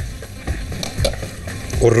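Food sizzling in a frying pan on the stove, with a few short knocks of cooking utensils against the cookware.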